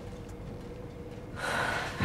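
Quiet room tone with a faint steady hum, then about one and a half seconds in a person's sharp intake of breath lasting about half a second.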